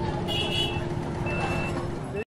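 Outdoor street background noise: a low rumble under a steady hum, with two short high-pitched beeps, one near the start and one past the middle.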